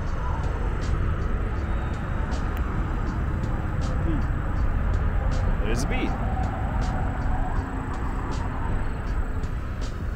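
Steady wind noise on the microphone, with footsteps crunching on a coarse gravel-surfaced asphalt road at a walking pace of about one step a second.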